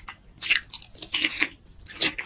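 Close-miked mouth sounds of a person chewing food, wet and smacking, in two louder clusters about half a second and about a second and a quarter in.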